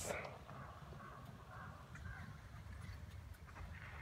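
Quiet outdoor background: a faint steady low rumble with a few faint, scattered distant sounds.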